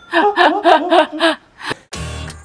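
Laughter: a quick run of about seven pitched ha-ha pulses lasting just over a second, followed by two short sharp clicks near the end.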